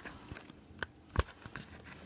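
A few faint handling clicks and light knocks, the sharpest a little over a second in, over a low rustle as hard plastic parts are handled.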